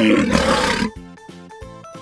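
A short animal-like roar, used as the toy Ankylosaurus's dinosaur roar sound effect, lasting just under a second, over background music that carries on after it.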